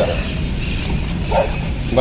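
Nine-month-old Bhotia dog giving a single short bark about a second and a half in, on a lead while worked up.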